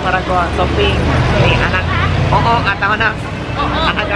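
A group's voices talking and laughing over a steady low rumble of road traffic, which grows stronger for a couple of seconds in the middle.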